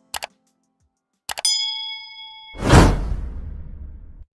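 Sound effects for an animated subscribe button: a quick double mouse click, then more clicks and a bell ding that rings for about a second, then a whoosh that swells and fades near the end.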